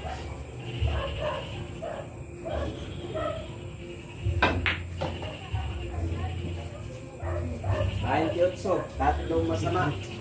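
Billiard balls clacking: a cue strikes the cue ball about four and a half seconds in, followed at once by a couple of sharp ball-on-ball knocks. Voices chatter in the hall around it.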